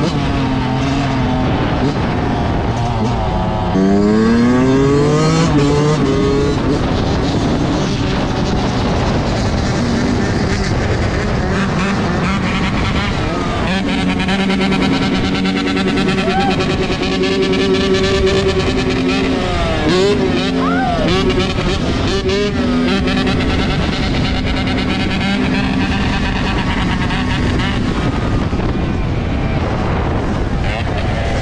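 Yamaha YZ125 two-stroke dirt bike engines running hard under throttle at close range. A few seconds in, the pitch climbs in several quick rising sweeps as the bike accelerates. Later the engine holds a fairly steady pitch while wheeling, with a few brief swoops of throttle.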